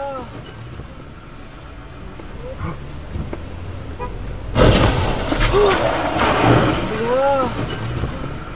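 Loud rushing noise, swelling sharply about four and a half seconds in, with short rising-and-falling voice-like cries over it.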